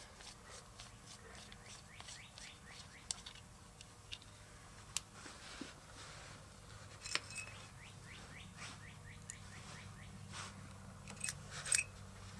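Faint clicks and a few sharp ticks of small steel diesel-injector parts being handled and fitted together by hand, with a cluster of ticks near the end, over a low steady hum.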